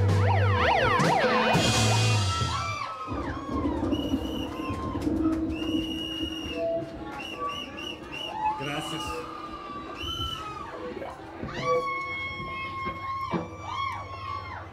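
A live rock band with electric guitar ends a song on a loud final chord, with guitar pitches sliding up and down, and it cuts off about two and a half seconds in. A bar audience then cheers, whoops, whistles and claps.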